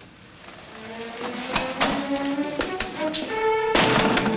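Orchestral film score building from quiet, sustained notes shifting in pitch, punctuated by several sharp accented hits, with a loud chord near the end.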